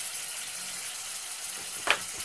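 Mutton and ginger-garlic paste sizzling in hot oil in a pressure cooker, a steady frying hiss. There is one sharp knock near the end.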